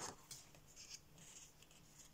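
Faint rustle of a colouring book's paper page being turned by hand, with a short tap right at the start.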